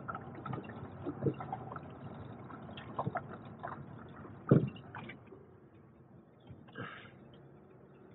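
A car rolling slowly along a gravel lane, heard from inside the cabin: the tyres crunch with scattered small pops and a louder knock about halfway through. It gets quieter in the last few seconds.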